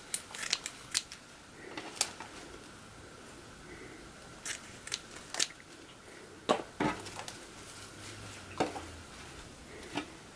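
Scissors snipping sheer ribbon: a series of separate sharp snips and clicks, several close together near the start and others scattered through the rest, mixed with small taps as the ribbon bow is handled.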